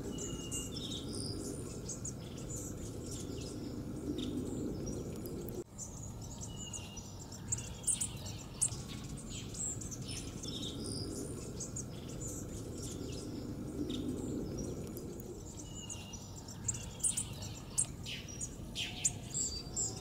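A flock of bushtits giving many short, high twittering calls, scattered irregularly throughout, over a steady low outdoor background hum.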